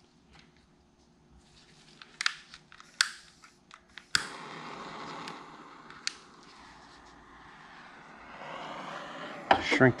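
Butane torch clicking a few times, then lighting with a sharp click about four seconds in and hissing steadily from then on, ready to shrink heat-shrink tubing over a wire splice.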